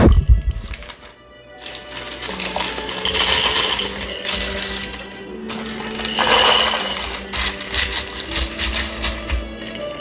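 Pie weights (small baking stones) pouring from a glass jar into parchment-lined pie crusts, a dense irregular clattering and rattling that comes in several pours.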